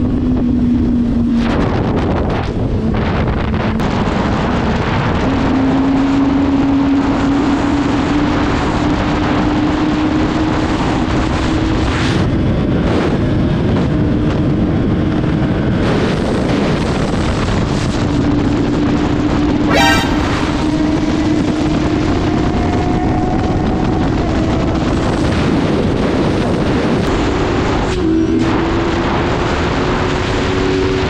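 Motorcycle engine running at a steady cruising speed on the road, its note holding one pitch and slowly drifting upward, with wind rushing over the microphone.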